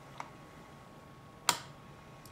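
A faint click, then about a second later a single sharp, louder click: the switch on a variable DC power supply being flipped to the 4.5-volt setting.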